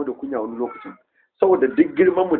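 A man's voice lecturing, with drawn-out pitched syllables; it breaks off for a short pause about halfway through, then goes on.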